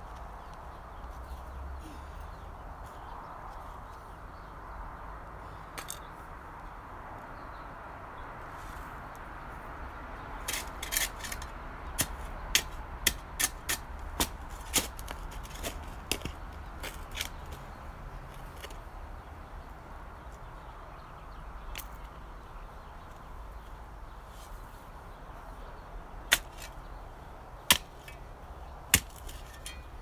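Steel shovel blade digging into stony soil, striking rocks: a quick run of sharp clicks and knocks about a third of the way in, then three single strikes about a second apart near the end.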